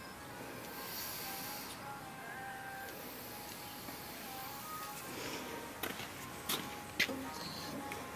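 Faint steady hiss of air and smoke from a smoke tester's nozzle with its valve just opened, under faint background music. A few light clicks come near the end.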